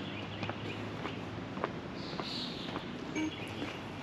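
Soft, irregular footsteps on an outdoor trail, over a steady low background.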